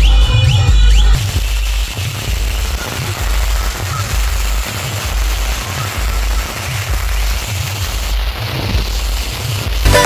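Loud DJ dance music from a wedding sound truck, mostly its heavy bass beat at about two a second, under a dense even hiss and crackle from a firework fountain and firecrackers.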